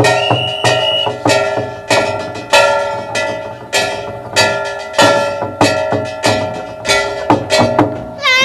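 Lakhon bassac theatre ensemble playing an instrumental passage: a steady beat of drum strokes and ringing metallic, bell-like strikes about every 0.6 seconds, with a short held high note in the first second.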